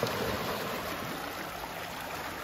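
Small sea waves washing and lapping over shoreline rocks, a steady rush of moving water.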